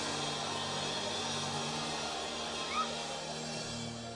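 Soft background music of long held low notes over a faint haze of room noise, with one short high-pitched rising cry a little under three seconds in.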